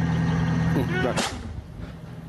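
Steady low engine hum of a tracked self-propelled howitzer running at its firing position. About a second in, a short burst of hiss-like noise cuts across it, and the hum then falls away.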